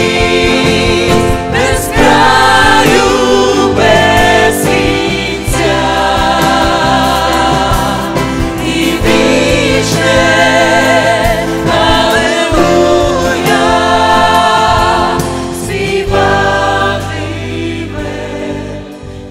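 A worship team of several women and a man singing a Ukrainian worship song in harmony into microphones, in sung phrases with held notes and vibrato, over steady instrumental accompaniment.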